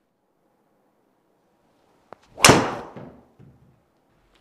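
A golf driver striking a teed ball: one sharp, loud crack of impact about two and a half seconds in, dying away quickly, followed by a few faint knocks.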